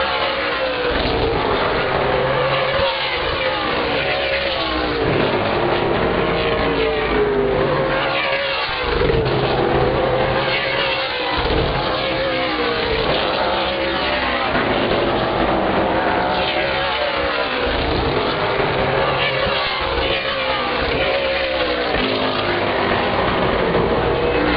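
A field of super late model stock cars with V8 engines racing around a paved short oval, one engine note overlapping another, each rising and falling in pitch as the cars pass and rev off the corners.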